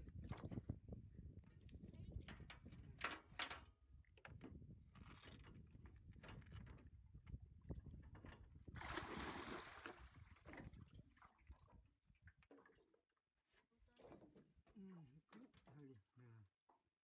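Faint water sloshing and splashing against the side of a small boat as a large catfish is held at the gunwale, with scattered knocks and a louder splash about nine seconds in. A quiet voice near the end.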